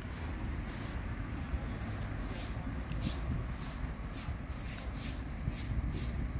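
Roadside ambience: distant road traffic as a steady low rumble, with a faint high pulsing that repeats every half second or so.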